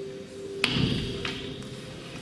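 A person falling onto a wooden stage floor: a sharp knock a little over half a second in, then a low thud, and a fainter knock just after. Background music plays underneath.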